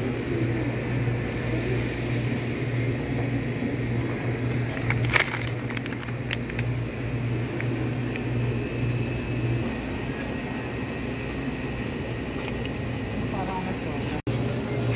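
Supermarket ambience: a steady low hum with indistinct shoppers' voices murmuring in the background, and a short clatter about five seconds in.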